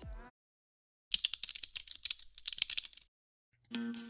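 Computer keyboard typing: a fast run of clicks lasting about two seconds, set between two short stretches of dead silence. Music starts near the end.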